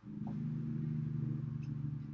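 A low, steady hum made of several held low tones, fading out shortly after the end.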